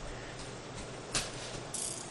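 Plastic ratcheting lid of a round multi-compartment sprinkles dispenser being twisted by hand: a few faint clicks, one sharp click about a second in, and a short hiss near the end.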